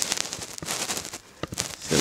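Camera handling noise: irregular crackles and clicks on the microphone while the camera pans.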